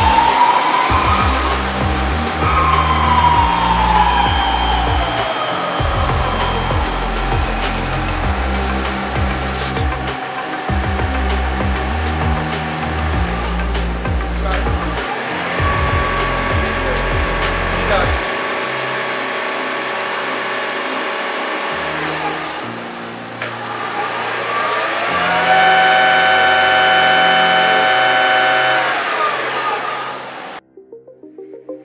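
CNC lathe spindles running with an electric whine. Early on, the main spindle's whine rises and then falls in pitch as it speeds up and slows down. Later the B-axis milling spindle runs at a steady whine and steps up to a higher pitch about three-quarters of the way through as it goes from 3000 to 4000 rpm.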